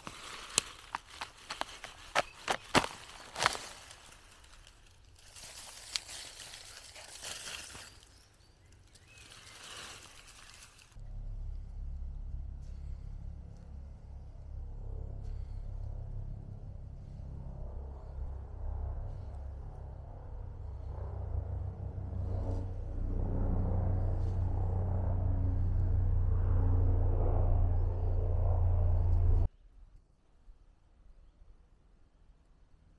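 A large artist's conk (Ganoderma applanatum) bracket fungus cracking and snapping as it is broken off a log by hand, with several sharp cracks in the first few seconds followed by rustling. From about eleven seconds a steady low sound takes over, growing louder until it cuts off just before the end.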